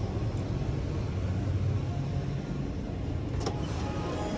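Steady low outdoor rumble, then a single sharp click about three and a half seconds in as a glass entrance door is pulled open.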